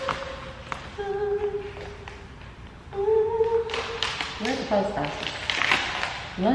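A woman humming a few long held notes, each about a second long, then starting to talk near the end.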